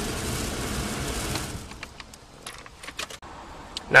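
Nissan Maxima's cabin blower fan running on its highest setting, a steady rush of air from the dash vents, which falls away about a second and a half in and is followed by a few light clicks. The fan works only on the top setting, which is typical of a failed blower motor resistor.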